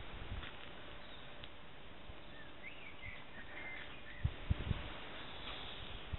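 A few faint, short bird chirps with quick up-and-down glides in pitch, over a steady background hiss. A few brief low thumps follow near the end.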